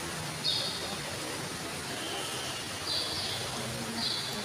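A small bird chirps a short high call twice, about two and a half seconds apart, with a fainter, lower chirp between them, over steady background noise.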